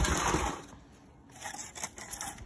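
A brief scrape as a plastic module seed tray is shifted across the tabletop, loudest in the first half second, followed by a few faint handling sounds.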